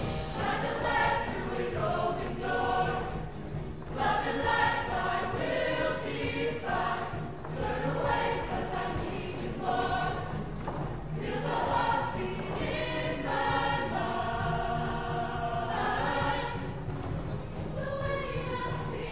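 Mixed show choir of male and female voices singing in harmony, in phrases broken by short pauses.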